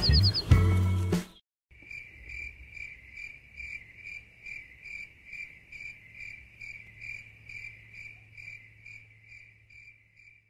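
Music cuts off about a second in. Then a cricket chirps steadily, about two short chirps a second, over a faint low hum.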